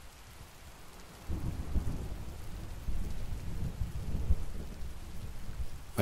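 Steady ambient rain, joined about a second in by a low rolling rumble of thunder that builds and carries on.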